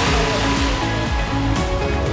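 Background music with sustained tones over a steady rushing noise.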